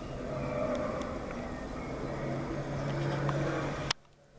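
A steady low motor hum over background noise, ending in a sharp click and a sudden drop near the end.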